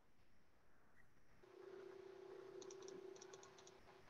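Near silence: a faint steady hum that comes in about a second and a half in and stops near the end, with a few very faint light ticks in its middle.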